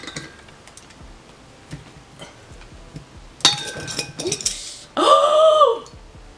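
A metal winged corkscrew being worked into a wine bottle's cork: faint clicks, then about a second of metallic rattling and scraping. Near the end comes a short, loud, high-pitched squeal that drops in pitch as it ends.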